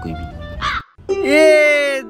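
A crow cawing, one long drawn-out caw in the second half, laid over background music as a comic sound effect.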